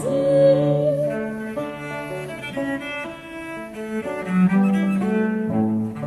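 Instrumental passage of mid-18th-century baroque chamber music, with bowed strings and a cello bass line playing steady, stepwise-moving notes.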